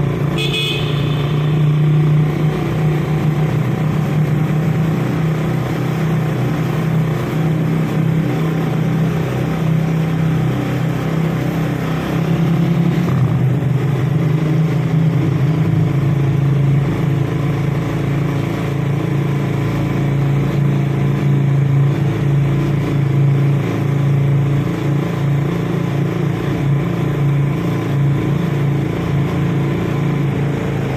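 A motor vehicle's engine and tyres drone steadily while driving through a road tunnel. About half a second in there is a brief high horn toot.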